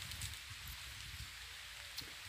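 Quiet outdoor background noise: a faint, even hiss with a low rumble underneath.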